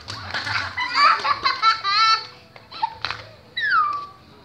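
Children's high-pitched voices laughing and shrieking, ending with a short cry that falls in pitch near the end.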